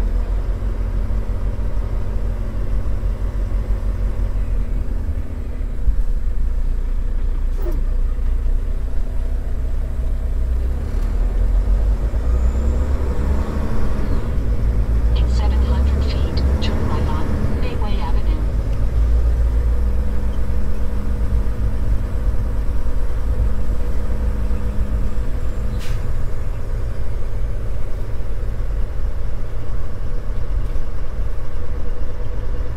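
Semi truck's diesel engine running with a steady low rumble as the tractor-trailer rolls slowly.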